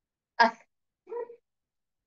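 Two brief voiced sounds: a short, louder one about half a second in and a fainter, shorter one about a second in.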